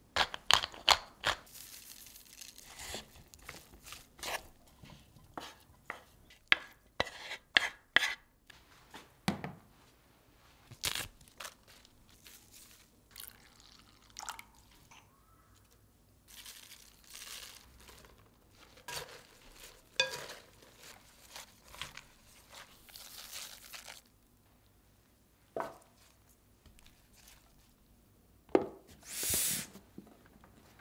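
Close-up kitchen food-prep sounds: many short crunches and clicks as seasoning is added and blanched broccoli is tossed in a wooden bowl, then softer rustling as leafy greens are mixed in a glass bowl. Near the end comes a louder knock, as a lid is set onto a ceramic storage container.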